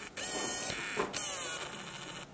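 A door unlatching with a click and swung open in two pushes, each a scraping creak that falls in pitch, the second longer.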